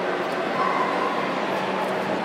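A dog yipping and whining over the steady hubbub of a large hall.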